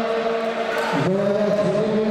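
A voice chanting or singing in long, steadily held notes, with a short break and a new note about a second in.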